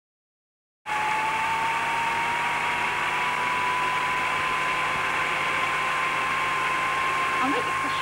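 Salon hood hair dryer starting up about a second in, then running with a steady whir and a thin motor whine that creeps slowly upward in pitch.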